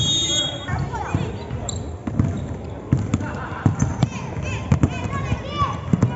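Basketball bouncing on a hard indoor court, a run of sharp bounces about half a second apart in the second half, with voices around it.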